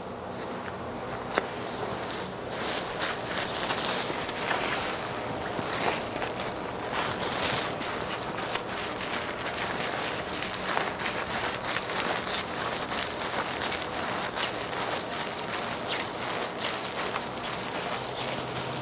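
Rustling of cloth and plastic-like sheeting as towels, washcloths and a large sheet are unfolded and handled, with scattered small knocks and steps.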